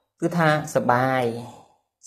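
A man's voice speaking one drawn-out phrase of a Khmer Buddhist sermon, fading out before the end.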